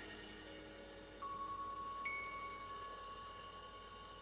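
Instrumental backing track of a pop song playing out its closing bars: soft, bell-like sustained notes, with a new high note entering a little over a second in and held while the music slowly fades.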